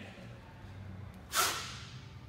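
A single short, sharp rush of air about one and a half seconds in, as the lifter drops fast under a PVC pipe into the bottom of a snatch drop.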